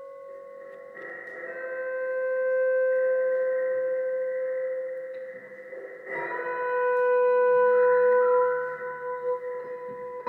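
Pedal steel guitar holding long, sustained notes that swell in about a second in, fade away, then swell in again with a new chord about six seconds in.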